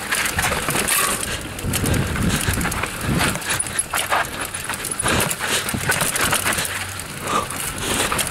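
Raleigh Tekoa 29er hardtail mountain bike clattering down a rocky trail: a dense, irregular run of knocks and rattles as the tyres hit the rocks, with low thumps and rolling tyre noise.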